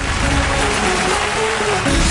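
Studio audience applauding, with music playing underneath.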